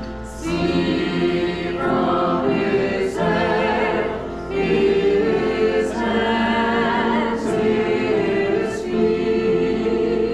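A small congregation singing a hymn together from hymnals, a mix of men's and women's voices moving from held note to held note at a slow pace.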